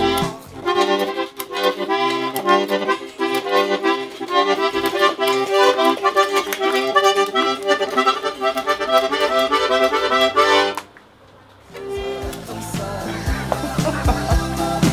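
Small toy accordion played in a run of chords and short notes. It breaks off for about a second near the end, then starts up again.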